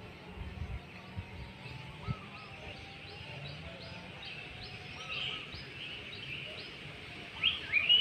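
Small birds chirping: a short high note repeated about twice a second, then a louder run of chirps near the end.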